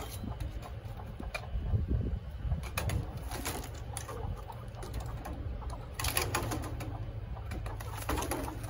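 Chickens in a coop calling softly while a chicken hook is worked in among them to catch a rooster by the leg, with scattered rustling and knocks and two short bursts of scuffling about three and six seconds in.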